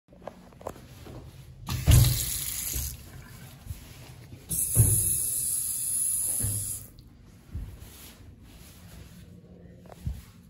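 Sensor-activated restroom faucets running twice: a short run of about a second, then a longer run of about two seconds, each starting with a thump.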